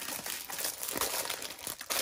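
Crinkling of thin clear plastic packaging as hands handle and shift cellophane-wrapped packs of clear plastic stamp storage pockets, a continuous run of small crackles.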